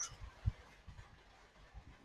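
Quiet room tone with a soft, low thump about half a second in and a few fainter low knocks.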